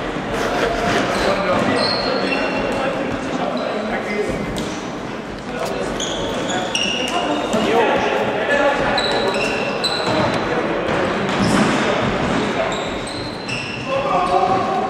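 Floorball play in an echoing sports hall: many short high squeaks of shoes on the wooden floor, scattered knocks of sticks and the plastic ball, and indistinct players' voices calling out.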